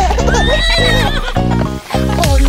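A horse whinny sound effect, one wavering high call lasting about a second, over bouncy children's-song backing music.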